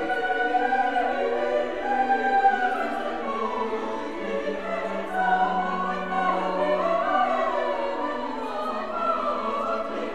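Chamber choir singing sustained chords in a late-Romantic sacred piece, accompanied by pipe organ.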